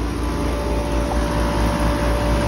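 Air-conditioning condensing unit running steadily just after being recharged with R-410A refrigerant: the compressor's low hum and the condenser fan's whoosh, with a steady tone held throughout.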